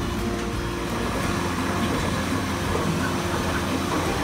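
Steady hum with a rushing noise from a recirculating laboratory flume, a GUNT HM 160 experimental flume, with its pump running and water flowing through the glass channel.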